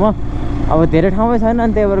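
A man talking over the steady low drone of a motorcycle engine running at a slow cruise.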